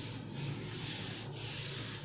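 Whiteboard duster being wiped back and forth across a whiteboard, erasing marker writing: a steady rubbing in repeated strokes.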